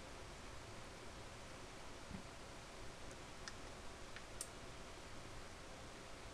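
A few faint, sharp clicks from the relays of an Eternity Force Line voltage stabilizer, coming in the second half over a steady low hiss. The stabilizer is faulty and is not putting out its proper 110 volts.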